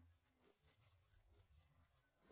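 Near silence in a vocals-only track, during a gap between sung lines: only a faint low hum remains.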